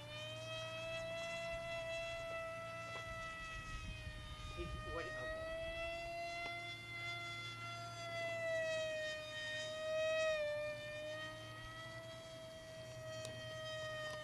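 Motor and propeller of a radio-controlled flying-wing model plane in flight: a steady whining tone that wavers slowly in pitch, dipping about four seconds in and again about ten seconds in.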